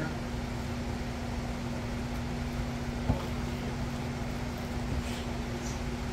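Steady mechanical hum holding one low fixed tone over a background hiss, with a single short click about three seconds in.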